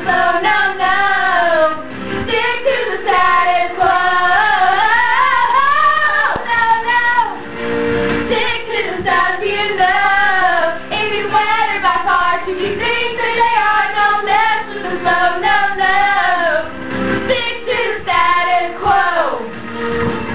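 Teenage girls singing along, karaoke-style into handheld microphones, to a recorded pop song, a continuous melody with short pauses between phrases.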